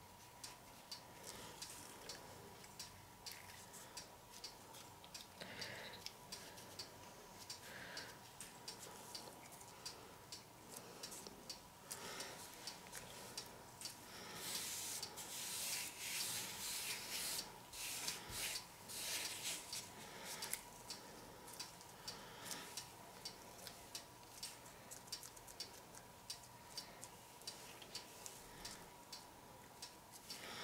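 Quiet room with a faint, regular ticking throughout. In the middle comes a soft rubbing of latex-gloved hands pressing on the back of a canvas.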